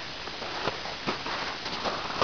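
Faint footsteps in snow: a few soft, irregular steps over a steady low hiss.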